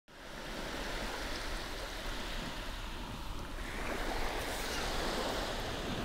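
Steady wash of ocean surf, fading in at the very start and swelling slightly in the second half.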